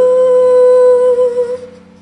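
A woman's voice holding one long, steady sung note over a soft karaoke backing track, fading away near the end.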